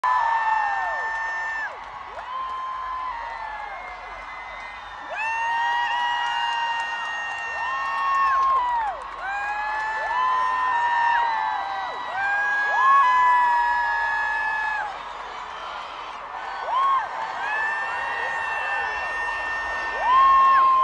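Concert crowd screaming and cheering: many high-pitched screams overlap, each held and then falling away in pitch, rising and easing in waves.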